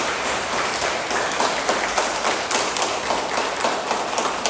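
Steady applause, many hands clapping together from children and adults.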